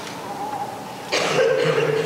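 A person coughing, starting suddenly about a second in after a moment of quiet room tone.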